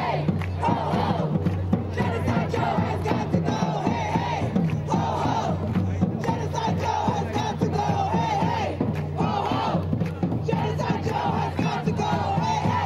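A large crowd of protesting students shouting a slogan in unison, chanting steadily.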